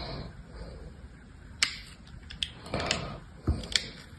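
Utility knife blade carving into a block of dry soap: several short, crisp clicks of the blade cutting through, with a longer scraping cut about three seconds in.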